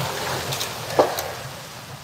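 Background noise of a large indoor lobby, slowly fading, with one brief short sound about a second in.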